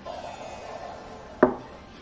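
A black cylindrical container is handled and set down on a marble tabletop, with a light scraping and then one sharp knock about a second and a half in.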